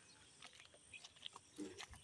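Near silence: faint outdoor ambience with a few soft clicks and a brief low sound shortly before the end.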